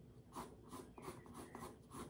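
Faint scratching of a pencil on paper clipped to a drawing board: a quick run of short strokes, several a second, as features are drawn over a printed photo.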